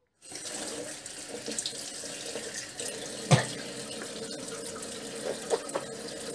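Bathroom tap running water into a sink, with a sharp knock about halfway through.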